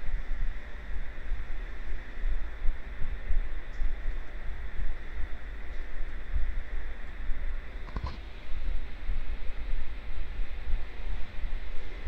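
Steady low rumble and hum of background noise with a faint hiss, and a single sharp click about eight seconds in.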